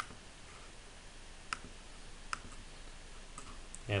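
Several single computer mouse clicks, spaced irregularly, over a low steady hiss.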